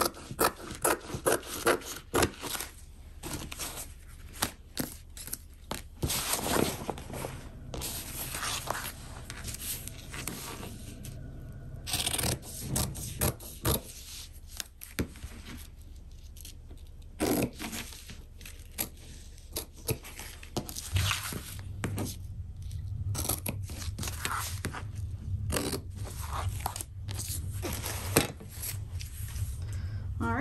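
Fabric scissors snipping through interfaced fabric, with rustling, scraping and handling of fabric pieces on a cutting mat: a scatter of short sharp clicks and rustles throughout.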